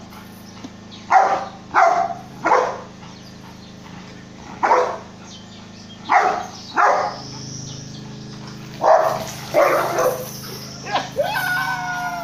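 A dog barking at a goat: three bursts of three sharp barks, each bark about half a second apart. Near the end comes a longer call with wavering pitch.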